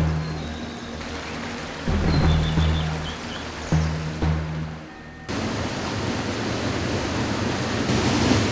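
Deep, drum-like background music notes, then about five seconds in an abrupt cut to the steady rushing of swollen brown floodwater pouring over a weir.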